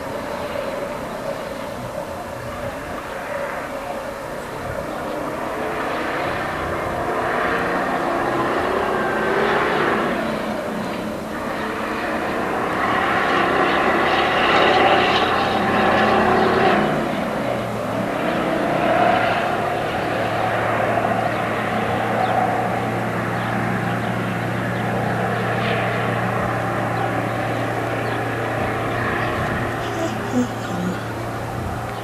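A motor vehicle's engine running steadily, with a rushing noise that swells in the middle and a low steady hum that sets in about eighteen seconds in.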